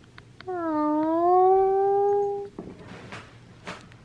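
Small fluffy dog giving one long howl of about two seconds, its pitch dipping then rising and holding steady, followed by a few short noises.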